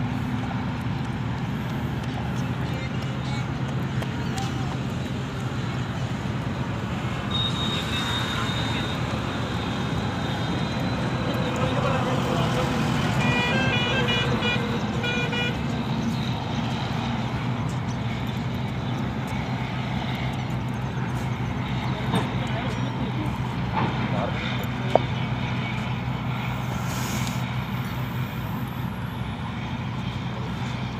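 Steady traffic rumble from a nearby elevated highway. A short series of evenly spaced high beeps comes about halfway through, and a single sharp click near the end.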